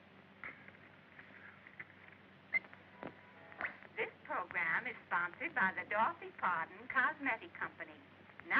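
A tinny voice from a radio loudspeaker, faint with a few clicks in the first three seconds, then loud and continuous from about three and a half seconds in.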